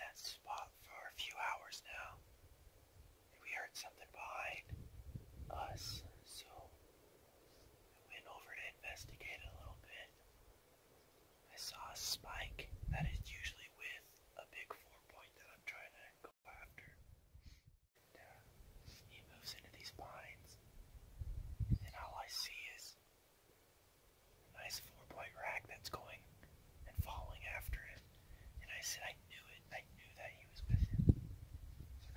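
A man whispering in short phrases with brief pauses, and a short dropout about halfway through.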